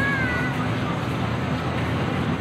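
City park ambience: a steady rumble of traffic with indistinct voices, and a short high-pitched call lasting about half a second right at the start.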